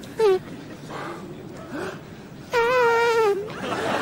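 A high-pitched human vocal whine: a short falling squeak just after the start, then one long wavering held note in the second half.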